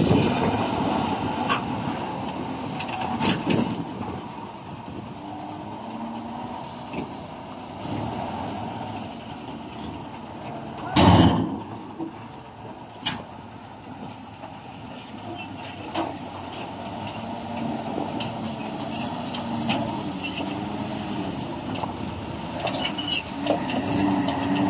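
Isuzu Giga dump truck's diesel engine running while the raised bed tips out a load of soil, then the truck pulling away. One short, loud burst about eleven seconds in, with lighter knocks a few seconds later.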